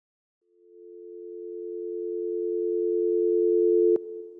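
Telephone dial tone: a steady pair of low tones that fades in about half a second in and swells louder, then breaks off with a sharp click near the end.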